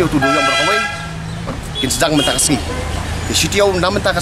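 A vehicle horn honks once for about a second right at the start, over a man talking.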